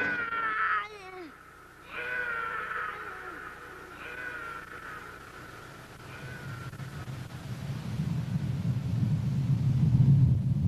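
A cartoon lion cub's small growling roars: one loud one at the start, then weaker ones about two seconds apart, each falling in pitch. Over the last few seconds a low rumble builds steadily louder, the approaching wildebeest stampede.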